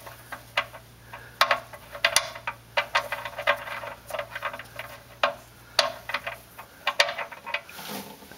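Engine oil dripping and splattering from the drain hole into a drain pan with a mesh screen, heard as irregular ticks and pats, as the drain plug comes free.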